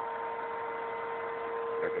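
Vacuum cleaner running steadily: a constant motor whine over an even rushing hiss.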